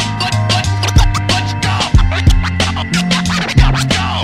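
Instrumental hip-hop beat: a steady drum pattern with a deep kick over a held bass line, with turntable scratching.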